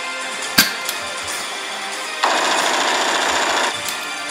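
A single sharp shot-like crack about half a second in, then about a second and a half of loud, rapid machine-gun-like fire, over background music.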